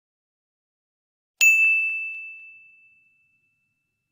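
A single bright 'ding' sound effect on a subscribe-button animation: one sharp bell-like strike after about a second and a half of silence, ringing out on one clear tone and fading away over about two seconds.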